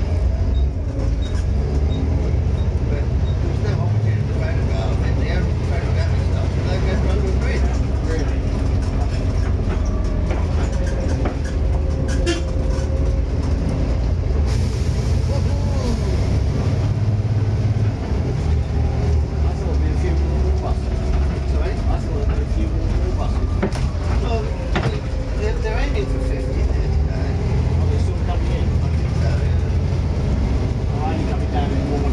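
Volvo B7TL double-decker bus on the move, heard from inside: its diesel engine runs under load with a steady low drone, and the interior fittings rattle and click.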